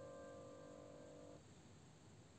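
Fading held notes of quiet instrumental background music that stop about one and a half seconds in, followed by near silence with a faint hiss.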